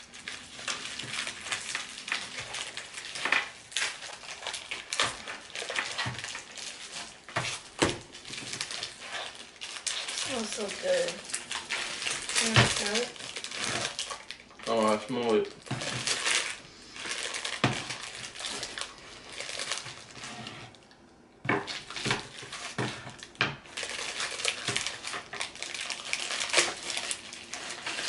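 Plastic packaging crinkling and tearing as gingerbread house kit pieces and candy bags are unwrapped by hand, with irregular clicks and light knocks of pieces on the tabletop.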